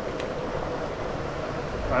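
Steady rush of flowing mountain-stream water.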